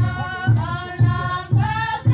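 A group of voices singing a folk dance song together over a steady low beat, about two beats a second.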